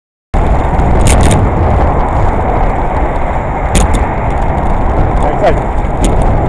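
Loud wind rumble on a moving bicycle's helmet-camera microphone, mixed with passing car traffic, with a few faint clicks. The sound cuts in abruptly just after the start.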